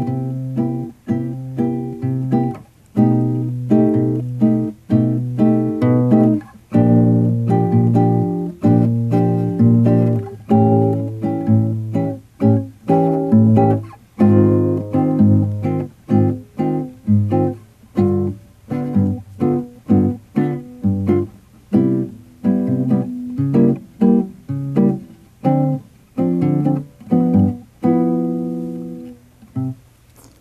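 Nylon-string classical guitar fingerpicked in a bossa nova accompaniment: the thumb plays bass notes on the first and third beats while the fingers pluck chords between them, moving through a chord progression at a fairly brisk, steady rhythm.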